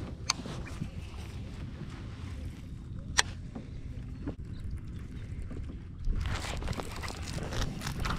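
Steady low rumble of wind and water around a fishing kayak, with sharp hard clicks from the angler's gear, the loudest about three seconds in. About six seconds in the noise grows louder and rougher.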